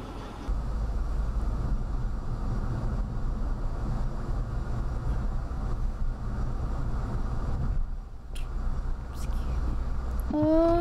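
Steady low rumble of a car's engine and tyres heard from inside the cabin through a dashcam's microphone, dipping briefly about eight seconds in.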